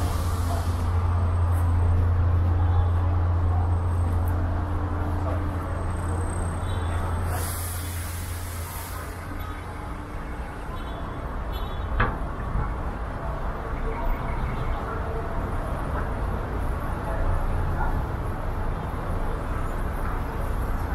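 Busy city-street traffic with passersby talking: a heavy vehicle's engine rumbles low for the first several seconds, a short hiss comes about eight seconds in, and a sharp click comes about twelve seconds in.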